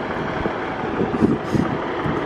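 Steady noise of vehicle traffic.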